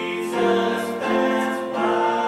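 Three voices, two men and a woman, singing a sacred song in harmony with piano accompaniment. The held notes change about every half second.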